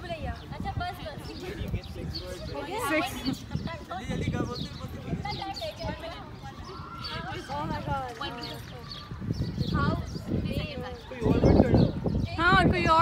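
A group of people talking over one another and calling out guesses, with a louder burst of voices near the end.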